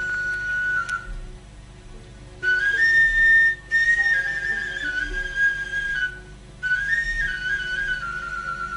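An end-blown flute plays a high solo melody in short stepwise phrases, pausing briefly about a second in and again about six seconds in.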